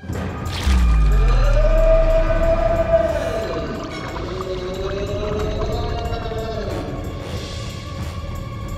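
Cartoon sound effects: a trick flower squirting a gushing jet of liquid, with a deep rumble starting about a second in and long sliding tones that rise and fall twice, over background music.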